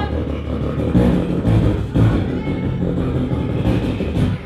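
Beatboxer producing a sustained deep bass sound into a cupped handheld microphone, with a few stronger pulses.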